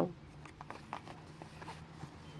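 Faint handling noise: a smartphone being slid into the phone pocket of a wallet, with a few light clicks and rubs.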